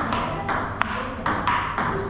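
A table tennis rally: the ball clicking in quick succession off the paddles and the table, roughly two or three hits a second.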